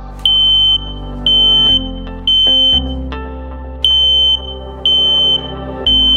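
Combination smoke and carbon monoxide alarm sounding: a loud, high-pitched half-second beep once a second, three in a row, a pause of about a second, then three more. This three-beep pattern is the standard temporal-3 alarm signal. Background music plays underneath.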